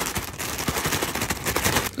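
Clear plastic packaging bag crinkling and rustling as hands open it: a dense, loud run of crackles that stops abruptly near the end.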